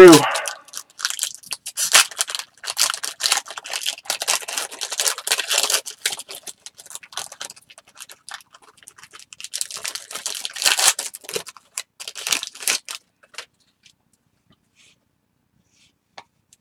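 Foil trading-card pack wrapper crinkling and tearing open, and the cards being slid out and handled, in a busy run of crackling rustles. It stops about three seconds before the end.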